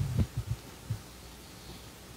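A few short, low, dull thumps close on the microphone in the first half second, of the kind made when a microphone is handled or knocked. After them only a faint steady hum remains.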